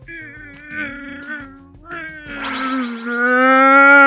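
A cow mooing in place of an elephant's trumpet: a shorter wavering call first, then one long moo held steady from about halfway through, falling in pitch as it ends. Light background music runs underneath.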